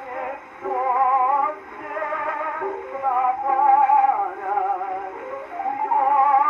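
Horn gramophone playing an early acoustic disc recording of an operatic tenor aria. The wide vibrato voice carries over a few held accompanying notes, with a thin, narrow range that has no highs.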